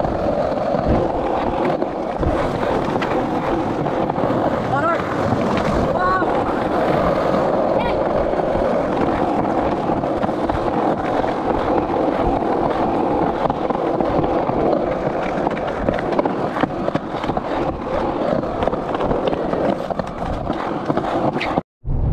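Skateboard wheels rolling steadily over an asphalt path, with voices in the background; the sound cuts off abruptly near the end.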